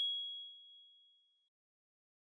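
KOCOWA+ logo sting: a single bright bell-like ding that rings out and fades away within about a second and a half.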